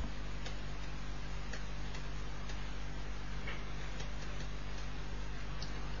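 Faint regular ticks, about two a second, over a steady electrical hum in the recording.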